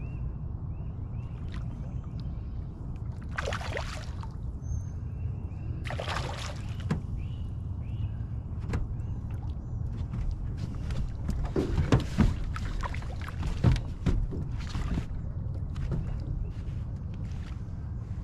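A hooked spotted bass splashing and thrashing at the surface beside the boat while being reeled in. There are several short splashes over a steady low rumble, and the loudest come about two-thirds of the way through.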